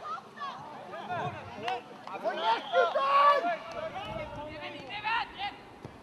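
Several voices shouting and calling out across a football pitch during open play, overlapping. The loudest shout comes about three seconds in.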